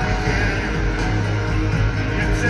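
Live rock band playing loudly through an arena sound system, with electric guitar prominent, heard from the audience seats.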